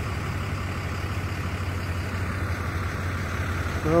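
Steady low mechanical hum, like an engine idling, running evenly throughout.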